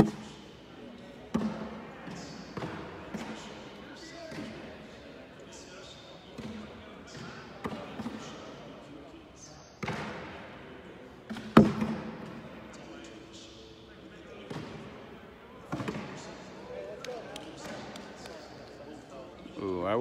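Cornhole bags landing on the wooden boards with a series of separate thuds, the loudest one about halfway through. Faint voices of the players and onlookers murmur in the background.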